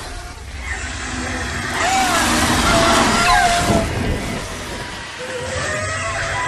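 TV battle audio: a loud rush of noise with short, wavering high cries gliding over it.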